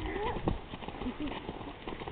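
Hoofbeats of a pinto pony cantering on grassy ground, a run of irregular soft strokes.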